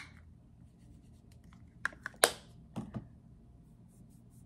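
Handling of a pressed-powder highlighter compact and swatching it: a sharp click at the start, then a few clicks and taps about two seconds in, the loudest near the middle, followed by softer knocks, with faint rubbing between them.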